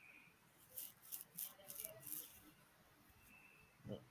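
Near silence, with a short run of faint computer keyboard clicks about a second in.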